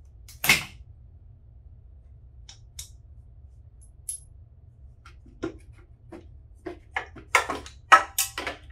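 Hand disassembly work on a dirt bike: a short hiss about half a second in, then scattered light ticks, and from about two-thirds of the way through a quickening run of small metallic clicks and knocks, loudest near the end, as the radiator fan shroud, bracket and its fasteners are worked loose and handled.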